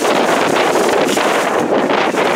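Wind on the camera's microphone: a loud, steady rush of noise with no breaks.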